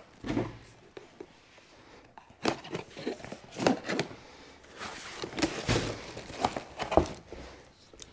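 Packaging crinkling and rustling with scattered light knocks as coilover shocks are unwrapped and handled. The sounds are irregular, sparse at first and busier from a couple of seconds in.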